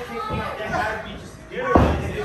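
One heavy slam about three-quarters of the way through, over voices: a wrestler's body hitting the ring mat.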